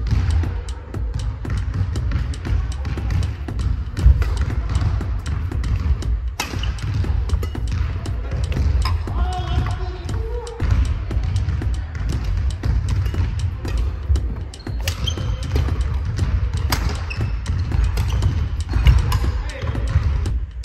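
Badminton rally: rackets striking the shuttlecock in sharp cracks, and shoes thudding and shuffling on a wooden court floor, over background music.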